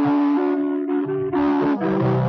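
Rock band playing live, a guitar carrying a melody of held notes that change about every half second, with lower notes coming in near the end.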